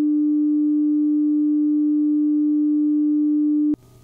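Steady pure sine test tone at about 300 Hz, the pitch given as the dividing line between bass and everything else. It cuts off suddenly near the end.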